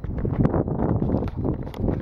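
Running footsteps on pavement with wind buffeting the microphone of a handheld camera carried by the runner.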